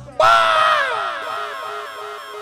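A man's drawn-out shout into a microphone, starting suddenly just after the reggae record cuts out and sliding down in pitch over about a second, trailing off in short falling repeats.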